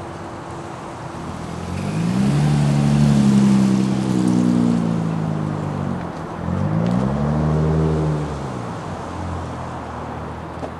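Chevrolet Corvette's V8 revved twice from idle, each rev climbing quickly in pitch, holding, then falling back.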